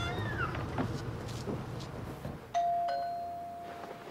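A doorbell rings once about two and a half seconds in: a single loud chime tone that dies away slowly. Before it there is a brief high, falling cry.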